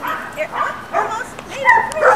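Parson Russell terrier mix dog giving a few short, high yips and whines in quick succession while excitedly jumping up at a person.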